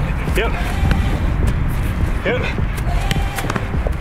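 Several sharp thuds of a football being kicked and caught back and forth during a passing drill, with short shouted calls between them.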